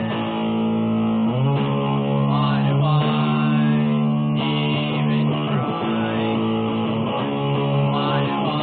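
A man singing a song while strumming a Les Paul-style electric guitar, with held, sliding vocal notes over steady chords.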